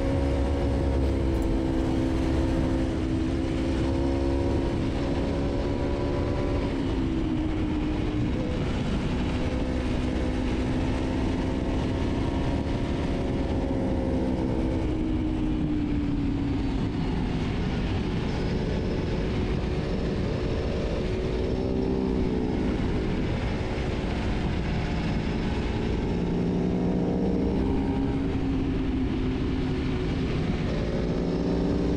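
Engine of an Aprilia sport motorcycle running at speed with wind rush. Its pitch rises and falls several times as the throttle opens and closes.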